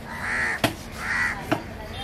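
Crows cawing over and over, with two sharp chops of a heavy knife through fish onto a wooden chopping block, one about a third of the way in and one about three quarters through.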